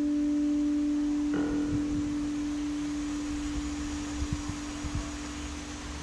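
Electric guitar holding one long sustained note that slowly fades, with a light new touch on the string about a second and a half in.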